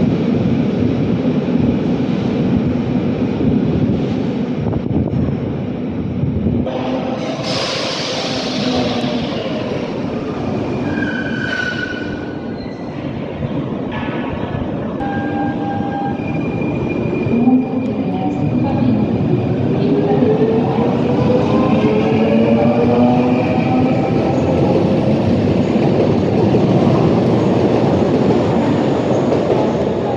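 Rhaetian Railway electric trains running through the station: a steady rumble of wheels on rails with a few brief high wheel squeals. From a little past halfway, a whine from the traction equipment rises in pitch.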